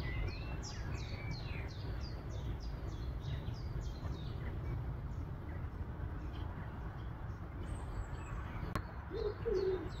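Songbirds chirping in a quick run of high, falling notes, a few a second, then a dove cooing twice near the end, over a steady low rumble.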